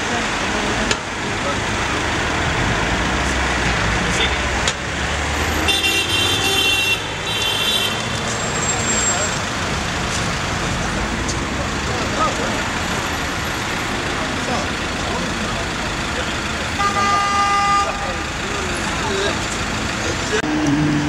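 Busy street noise of passing traffic and voices, with a vehicle horn tooting twice, about a third of the way in and again near the end.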